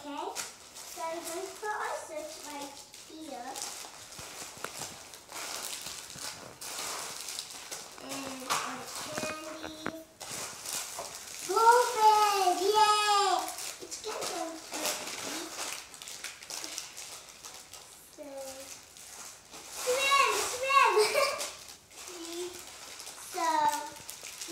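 Young children's voices chattering and exclaiming in short bursts, with the crinkle of plastic candy wrappers and bags being handled between them.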